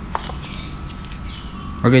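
Small metal parts, aluminium handlebar risers, handled by hand: a short light click just after the start, then faint handling noise over a steady background hiss.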